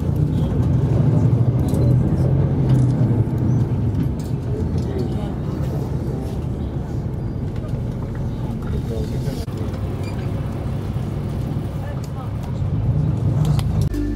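Steady low rumble of a moving tour bus heard from inside the cabin, engine and road noise, with indistinct voices under it.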